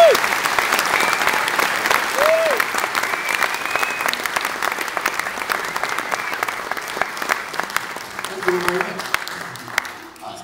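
Audience applauding at the end of a tune, the clapping dying down near the end.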